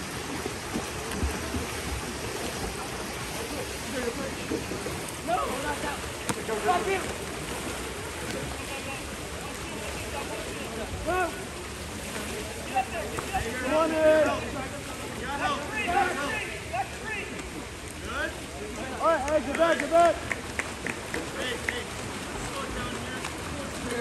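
Steady splashing of water polo players swimming and thrashing in a pool. Scattered shouts from players and spectators rise over it several times, loudest midway and near the end.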